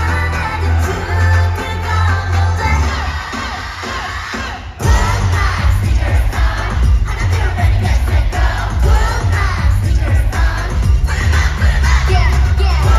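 Live K-pop music through a concert arena's sound system, heavy on bass, with singing and a cheering crowd. About three seconds in the track thins out, and a little before five seconds the full beat comes back in suddenly and loud.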